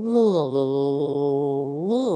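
A synthetic text-to-speech voice stuck on one long droning vowel instead of words. It swoops up and back down in pitch at the start, then holds a steady low tone. This is a glitch of the narration engine.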